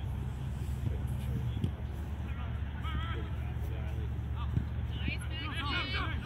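Shouting voices across a soccer field, over a steady low rumble. There are brief high calls about three seconds in and a burst of several voices shouting near the end. A few short knocks are heard as well.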